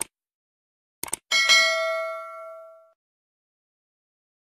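Subscribe-button sound effects: a mouse click, a quick double click about a second later, then a bell ding of several tones that rings out and fades over about a second and a half.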